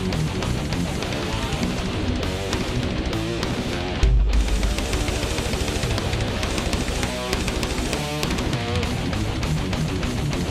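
Heavy metal music led by fast, distorted electric guitar playing over a full band. About four seconds in comes a deep low hit, and the higher sounds briefly drop out.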